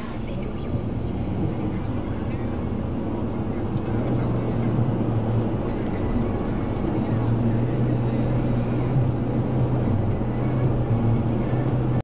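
Steady road and engine noise inside a moving car's cabin, with a low drone that grows a little louder about four seconds in.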